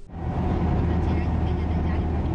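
Steady running noise of a moving road vehicle, a deep engine and road hum under an even rushing noise, starting suddenly.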